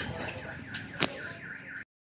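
An electronic alarm tone falling in pitch over and over, about four times a second, with a single sharp click about a second in; the sound cuts off just before the end.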